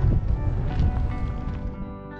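Wind buffeting the microphone in a low rumble, fading out near the end, under soft background music with held notes.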